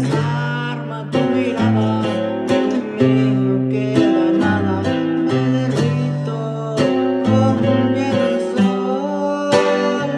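Acoustic guitar strummed in a steady rhythm while a man sings in Spanish.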